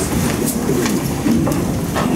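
Several people sitting back down at a meeting table: chairs being pulled in and rolling, with a few sharp knocks and low background talk.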